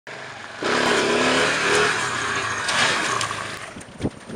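A vintage van driving across wet gravel: engine running under throttle with tyre noise and spray. It comes up sharply about half a second in and fades away near the end.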